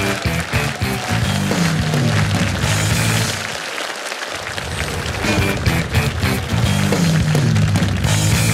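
Loud rock music with a repeating bass line and a driving beat; the bass drops out briefly about halfway through.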